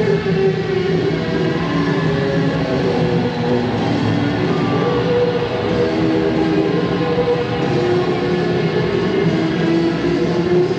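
Live rock band playing at a steady, loud level, with long held notes over a steady low bass line.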